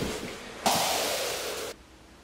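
Electric-shock sound effect: a hiss of static that fades, then about a second of steady static that cuts off suddenly.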